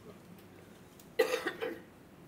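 A person coughing twice in quick succession, a little past a second in.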